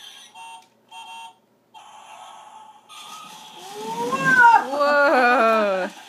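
A young child's voice: a loud, high-pitched, drawn-out vocal squeal lasting about two seconds, wavering up and down in pitch, starting a little past the middle.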